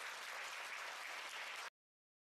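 Audience applauding, cut off abruptly near the end.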